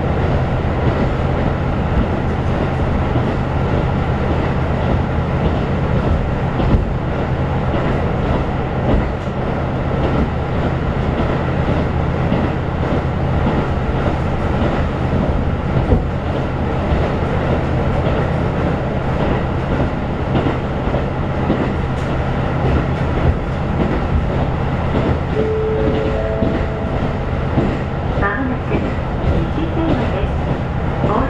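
Diesel railcar running at speed, heard from inside the carriage: a steady low engine drone under the rumble of the wheels on the rails, with occasional light clicks from the track.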